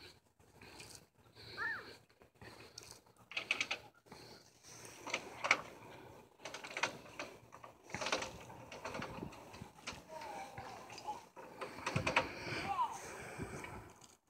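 Faint, irregular crunches and rustles on wood-chip mulch, with a few short, high vocal sounds from a toddler.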